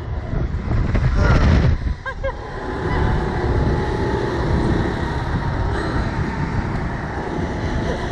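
Wind buffeting the microphone of a ride-mounted camera on a Slingshot reverse-bungee ride in motion, a steady heavy rumble. Two short cries from the riders come about one and two seconds in.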